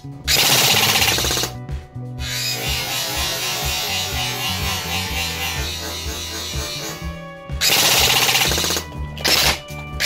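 Airsoft rifle fired in rapid bursts, one of about a second near the start and another near the end, over background music.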